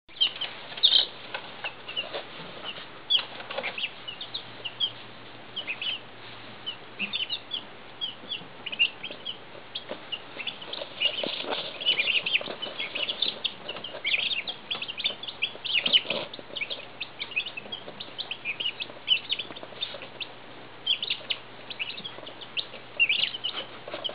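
Two-day-old Midget White turkey poults and five-day-old Icelandic chicks peeping constantly: many short, high peeps overlapping, several a second, over a faint low steady hum.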